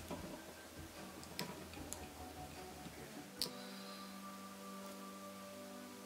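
A few small, sharp clicks of a screwdriver and plastic flash parts being handled, the loudest about three and a half seconds in. From about three seconds in, soft background music with long held tones comes in.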